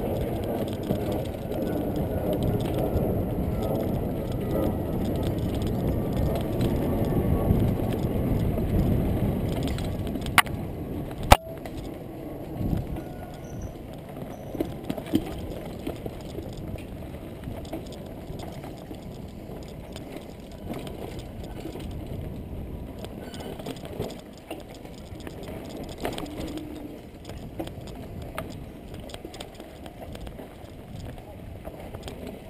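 Mountain bike riding over a rough dirt forest trail, heard close up from the bike: a steady rumble of tyres on dirt with the frame and drivetrain rattling. About ten seconds in come two sharp knocks, and after them the ride runs quieter.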